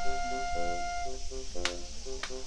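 Background music with a steady, repeating pattern of notes, and one sharp click about one and a half seconds in.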